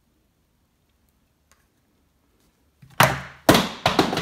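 A handheld torch dropped on the floor: two loud clattering impacts about half a second apart, about three seconds in.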